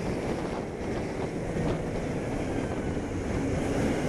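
Wind rushing over the microphone of a moving motorcycle at a steady level, with a Kawasaki Ninja 250R's parallel-twin engine running underneath.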